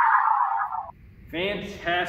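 Electronic whoosh from the countdown timer's music track, sweeping downward in pitch and fading out just under a second in; a man starts talking shortly after.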